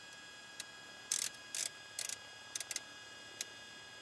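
Small plastic clicks from a Garmin GNS 430's rotary knob and push buttons as a waypoint identifier is dialed in, coming singly and in quick little clusters. Under them runs a faint steady high whine.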